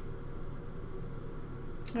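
Room tone: a steady low hum with faint even noise and no distinct events.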